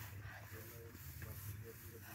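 Faint, murmured voices in short fragments over a steady low hum and light hiss.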